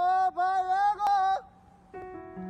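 A high voice singing a short run of held, wordless notes with small pitch glides, stopping about a second and a half in.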